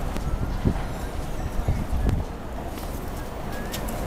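Outdoor ambience with an uneven low rumble and two soft thumps, one under a second in and one about two seconds in.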